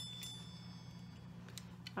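Quiet room tone: a steady low hum with a few faint, light clicks.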